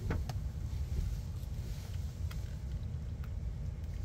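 Steady low rumble of a car's cabin, with a few faint soft clicks of someone chewing a fry.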